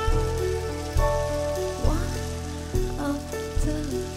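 Slow jazz played by a small band with no singing: a double bass sounds a low note about once a second under sustained piano and keyboard notes, with a steady hiss from the drums.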